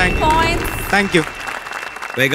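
Studio audience applause, with voices heard over it. The applause thins out over the second half.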